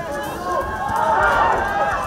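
Several voices shouting and calling over one another, swelling about a second in.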